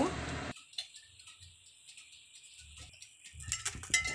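A steady hum that cuts off suddenly after half a second, then near silence; from about three seconds in, light clicks and clatter on the turbo broiler's metal wire rack as the roasted whole chicken is turned over, with hot fat starting to sizzle.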